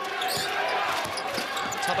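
Basketball dribbled on a hardwood court, a few low bounces in quick succession.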